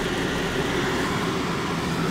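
Vehicle engine and tyre noise heard from inside the cab, a steady low hum and rumble while driving through deep snow.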